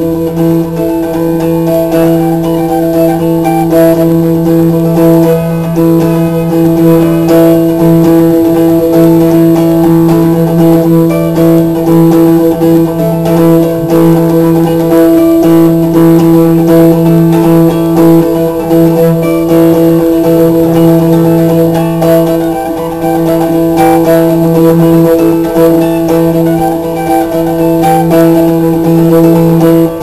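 Appalachian mountain dulcimer playing an old-time tune, the plucked melody running quickly over steady drone strings that sound unbroken throughout.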